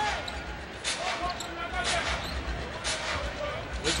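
A basketball being dribbled on a hardwood court, sharp bounces about once a second, over the low murmur of an arena crowd.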